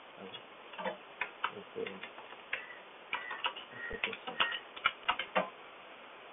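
Computer keyboard being typed on: a run of short, irregular keystroke clicks that starts about a second in and stops shortly before the end, as a short remark is entered.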